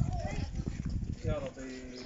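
Voices of a group of people talking, with low irregular thumps underneath. In the last half second one voice holds a steady, drawn-out note.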